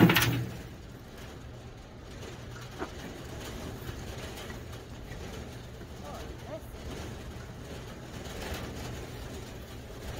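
A shovel dumping a load of worm compost with a loud scrape and knock right at the start. Then quieter digging in the compost with a couple of faint knocks, over a steady low hum.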